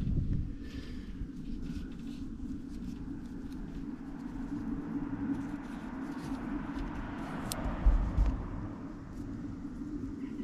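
Steady outdoor background hum, with a vehicle passing that swells in the middle and fades. There are scattered small clicks, and a thump about eight seconds in.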